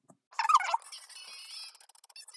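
A guinea pig's high-pitched squeal, bending up and down, about half a second in, followed by a fainter, steady high-pitched sound.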